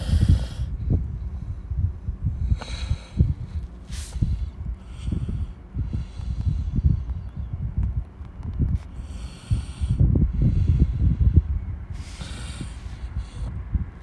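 Handling noise on a phone's microphone: irregular low thumps and rumbles with a few sharper clicks as the phone is held and its screen tapped to type a search.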